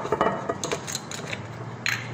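Light clinks and taps of utensils against a metal mixing bowl, several in the first second and one more near the end.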